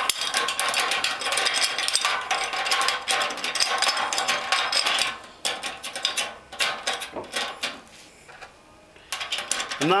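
Nuts being spun by hand onto the threaded fittings of a Blichmann BoilCoil electric heating element, with rapid metallic clicking and rattling that thins out after about five seconds and nearly stops near the end.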